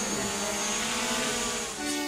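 Small quadcopter drone's electric motors and propellers whining steadily, a stack of pitched tones that drift slightly in pitch as the drone hovers and climbs.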